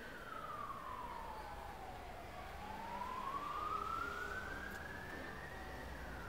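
Emergency-vehicle siren wailing in a slow sweep: its pitch falls for about two seconds, rises for about three and a half, and starts to fall again near the end.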